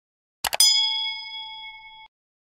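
Two quick clicks about half a second in, then at once a bright notification-bell ding that rings on and slowly fades: the click-and-bell sound effect of an animated subscribe button.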